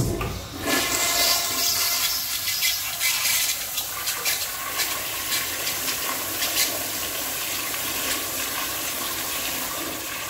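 A 1984–1986 American Standard toilet flushing: it starts suddenly, then water rushes and swirls down the bowl in a loud, steady rush.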